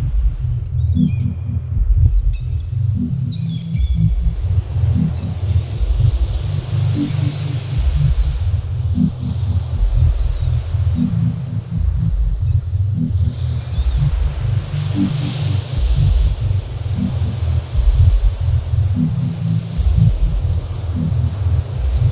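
Electronic music: a deep, stuttering bass pattern under short chirping sounds in the first few seconds and washes of high hiss that swell and fade several times.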